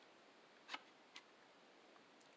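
Two soft clicks about half a second apart as the page of a thick cardboard board book is turned and laid flat, otherwise near silence.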